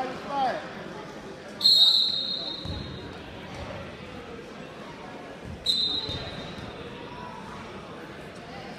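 A referee's whistle, blown in two short, shrill blasts about four seconds apart, each ringing on in the large hall.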